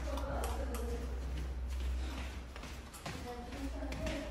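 Footsteps and handling noise from someone walking through a house, made up of faint irregular clicks and taps over a low steady hum.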